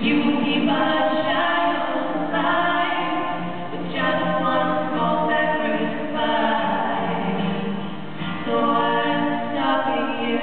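Two singers singing a slow song together, holding long notes.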